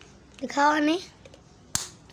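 A child's short spoken call, then a single sharp snap about three-quarters of the way in.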